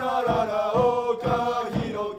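Football supporters singing a player's chant in unison, a wordless 'la-la-la' melody, over a steady bass-drum beat of about three beats a second.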